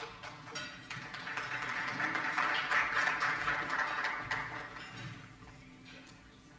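Audience applauding: a patter of many hands clapping that swells about a second in and dies away before the end.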